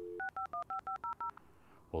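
Telephone keypad dialling: about eight quick touch-tone beeps in just over a second. They come right after a steady dial tone cuts off near the start.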